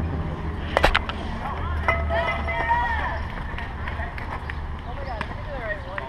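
One sharp crack of a softball impact about a second in, followed by distant shouting voices of players, with wind rumbling on the camera microphone throughout.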